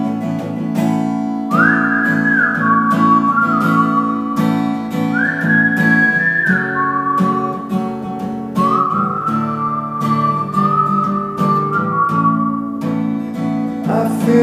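Acoustic guitar strummed steadily, with a whistled melody over it from about a second and a half in: three phrases of a single clear tone, each sliding up at its start.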